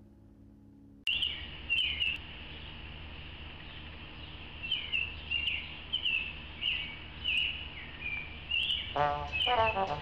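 A small bird chirping over and over in short, falling notes, about one to two a second, over a steady low outdoor hum. The sound cuts in suddenly about a second in, after near silence, and a person starts to speak near the end.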